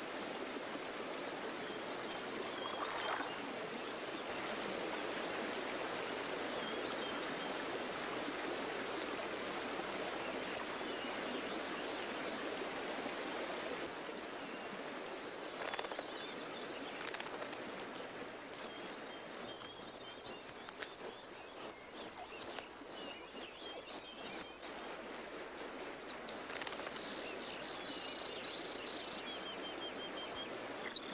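Mountain stream rushing steadily. Past halfway the water sound eases and an American dipper sings: a run of quick, high, repeated whistled notes and trills, loudest in the last third, trailing off into softer whistles near the end.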